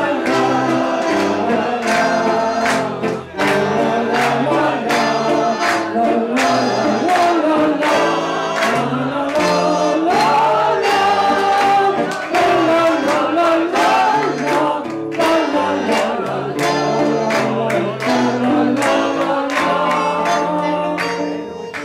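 Live tango played on guitar and bandoneon, with a woman singing through a microphone and PA over the accompaniment.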